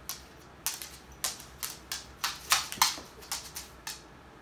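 A dog's claws clicking and tapping on a hardwood floor as it shifts about, about a dozen sharp, irregular clicks that stop near the end.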